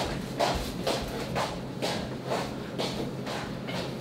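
Soft footsteps walking away at an even pace, about two steps a second, over a faint steady room hum.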